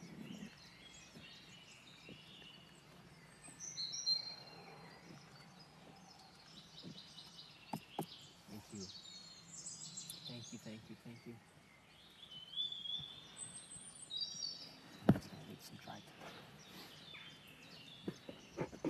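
Wild birds chirping in short, high phrases a few times over faint forest ambience, with scattered light clicks and one sharp knock about fifteen seconds in.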